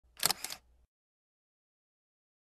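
A brief, sharp double click in the first half second, then silence.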